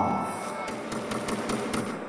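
A rapid run of about eight sharp clicks over about a second, a glitchy sound effect on an animated title graphic, over faint background music.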